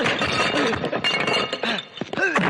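Glasses and crockery crashing and clinking as a body lands on a laden table, with ringing glass chinks that die away after about a second and a half.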